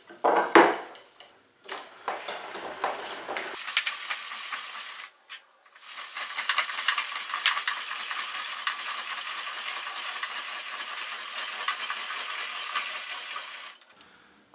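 Veritas twin-screw vise being cranked closed by its wooden handle: the steel screws and the chain that links them make a steady, fine metallic rattle with rapid ticking, broken by a brief pause about five seconds in. A few separate knocks and clinks from handling the front jaw come first.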